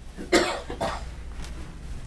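A man's short cough about a third of a second in, followed by two fainter, shorter sounds of the same kind.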